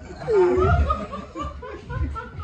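Laughter, in short broken bursts, during a stand-up comedy punchline.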